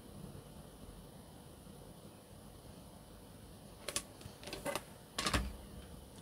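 Quiet room tone, then a few light plastic clicks and taps about four seconds in and a low thump near the end: a clear acrylic stamp-positioning guide being handled against a rotating stamp platform.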